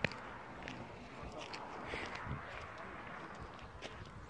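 Faint footsteps of a person walking over grass onto asphalt, with a few soft ticks over a quiet, steady outdoor background hiss.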